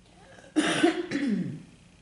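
A woman coughing twice in quick succession, the second cough trailing off in a falling voiced sound. She is still wheezy and crackly from a lingering chest illness.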